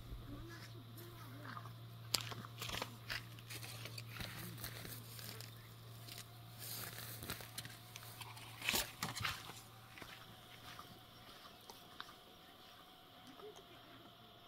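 Faint scattered rustling and crunching from a plastic bag and steps on dry grass, with a few louder crunches about two seconds in and again around nine seconds in.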